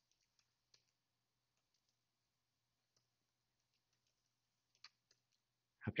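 Faint, sparse computer keyboard keystrokes: a handful of isolated clicks spread over a near-silent stretch, with a slightly stronger pair near the end.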